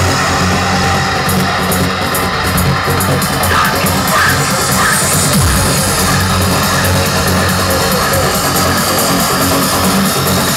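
Trance music from a DJ set, played loud over a club sound system, with a heavy bass line and no break.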